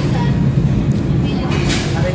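Background chatter of voices over a steady low rumble, with a short hiss near the end.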